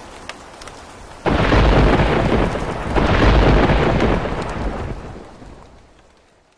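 Thunder with rain: faint rain at first, then a sudden thunderclap about a second in and a second surge of rumbling near three seconds in. The rumble dies away toward the end.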